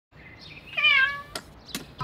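Kitten giving one meow that falls in pitch, followed by two short light clicks.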